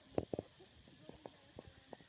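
A few short, sharp knocks: three close together near the start, then several softer ones spread through the rest.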